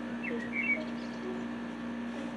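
Birds chirping a few short calls over a steady low hum.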